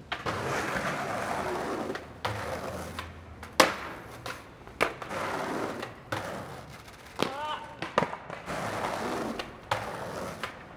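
Skateboard wheels rolling on concrete, broken by several sharp wooden clacks of the board popping and landing, the loudest about three and a half seconds in.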